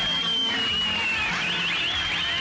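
A long, piercing two-finger whistle from the crowd, held on one high note and slowly sliding down, then breaking into warbling whistles, over background film music.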